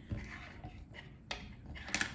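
A few sharp clicks and knocks of handling on a wooden tabletop, the sharpest near the end as steel hemostat forceps are picked up.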